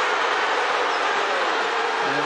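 Crowd noise from a basketball arena, a steady loud wash of many voices with no single sound standing out.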